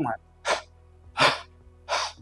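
A man imitating a weak, breathy cough: three short huffs about three-quarters of a second apart, not high-pitched. A weak cough like this is the sign of a windpipe fully blocked by a choking object.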